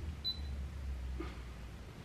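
Low steady electrical hum from a plugged-in bass amp rig, with faint clicks and knocks as an effects pedal and its cable are handled and set in place.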